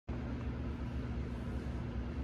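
Steady low hum with an even hiss over it: background room noise.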